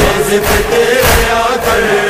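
Nauha, a Shia lament: voices chanting over a steady held drone, with a low beat underneath.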